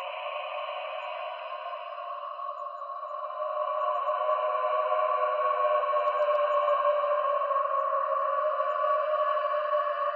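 Background music: a sustained synthesizer drone of several steady high tones with no bass, swelling louder a few seconds in.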